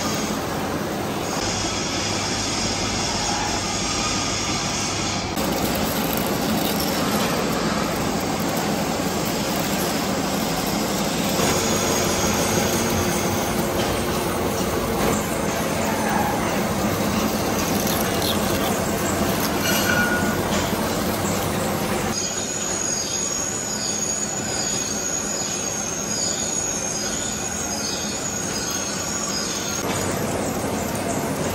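Engine lathe running and turning a large steel shaft, the cutting tool scraping steadily along the steel. From about two-thirds of the way in, a high, slightly wavering squeal of the tool on the steel sounds over the machine noise.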